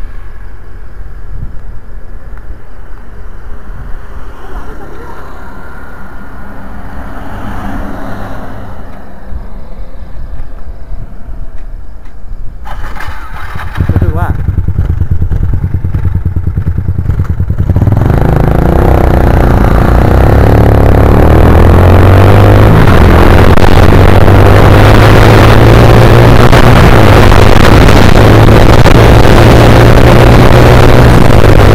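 Small single-cylinder underbone motorcycle engine running low at first. A little past halfway it gets much louder under a heavy rush of wind on the microphone as the bike speeds up, the engine note climbing slowly.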